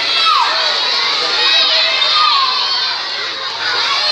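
A large crowd of schoolchildren shouting, many high voices overlapping at once. It dips briefly about three seconds in.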